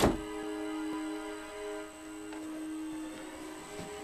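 A steady electronic drone of several held tones, the eerie sound-effect or score bed of a sci-fi scene, with a soft thump right at the start.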